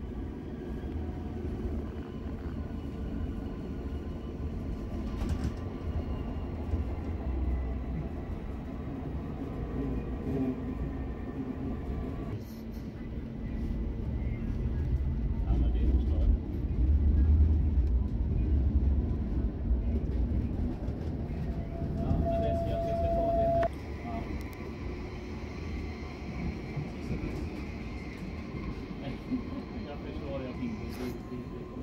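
Tram running on its rails, heard from inside the passenger car: a steady low rumble that swells louder about halfway through. Two-thirds of the way in, a thin high whine lasts about a second and a half and then stops abruptly.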